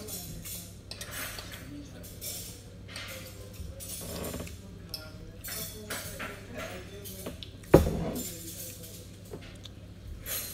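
Eating sounds of a woman taking chicken biryani by hand: chewing and fingers working the rice on a plate, with one sharp knock about three-quarters of the way through. A steady low hum runs underneath.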